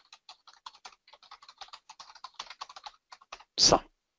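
Typing on a computer keyboard: a fast, light run of key clicks that stops shortly before the end.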